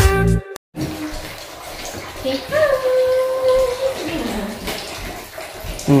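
Music cuts off under a second in, giving way to water running and splashing in a small tiled bathroom during a bath, with a short voice call over it.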